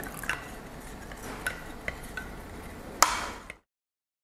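A metal spoon stirring in a glass measuring jug as espresso is poured into milk and condensed milk, with a few light clinks of spoon on glass and a sharper clink about three seconds in. The sound cuts off abruptly shortly after.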